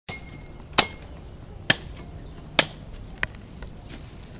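A blade chopping into an oil palm fruit bunch to cut the palm nuts loose: three sharp chops a little under a second apart, then a lighter one near the end.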